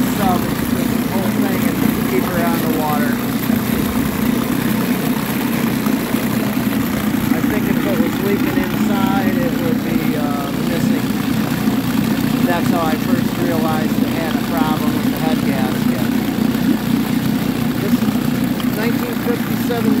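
1957 West Bend 7.5 hp two-cylinder two-stroke outboard running steadily at low speed in a test tank, its propeller churning the water, just after its head gasket and broken head bolts were repaired.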